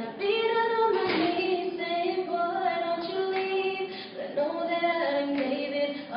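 Several girls singing together in harmony, with long held notes that slide between pitches and no clear words.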